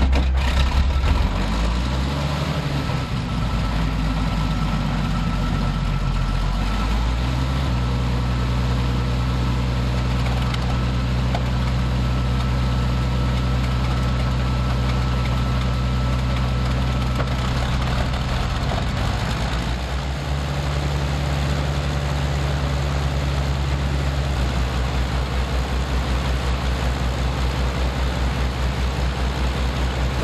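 Avro Shackleton's Rolls-Royce Griffon piston engines running on the ground after start-up, a loud low drone. The drone is uneven for the first few seconds, then settles to a steady note, with shifts in pitch around twenty and twenty-four seconds in.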